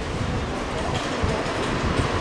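Steady background noise with a low rumble, without speech.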